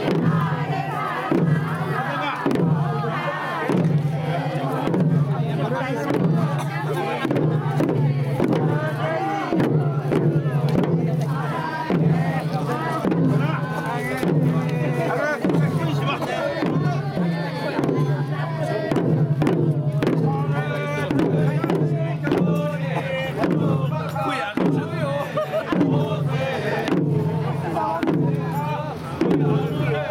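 Amami hachigatsu odori: a crowd of dancers singing together over a steady beat of chijin hand drums struck with sticks.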